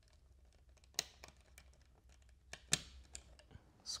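Faint clicks and rustles of a thermostat wire being worked out of its screw terminal on a plastic wall plate, with two sharper clicks about a second in and near three seconds, over a faint low hum.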